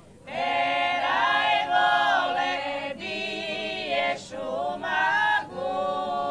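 A women's folk singing group singing a cappella in several parts: long held phrases, broken by short breaths about every one to three seconds.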